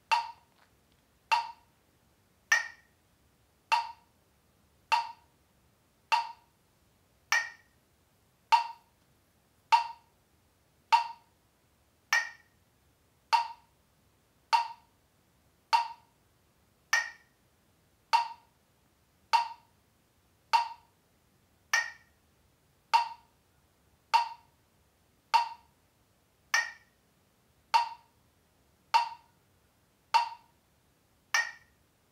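Metronome clicking steadily at 50 beats per minute, one sharp click a little over a second apart, with every fourth click higher-pitched to mark the start of each bar.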